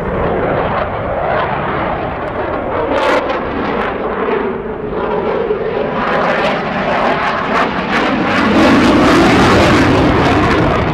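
Jet noise from a Eurofighter Typhoon's two Eurojet EJ200 turbofans as it flies a display manoeuvre overhead. A pitched note within the noise slides down over the first few seconds, then rises again, and the sound grows louder toward the end.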